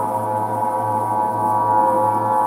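Aeolian wind harp tuned to A=432 Hz, its strings sounding together in the wind as a steady chord of sustained, overlapping tones over a low drone.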